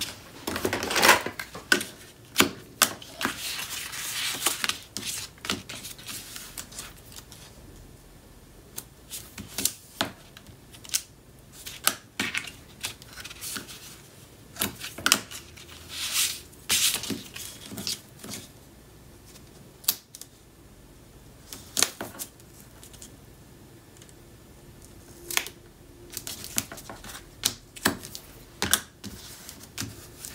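Cardstock and double-sided score tape being handled on a craft table: irregular sharp clicks and taps with short rustles of paper and peeled tape liner.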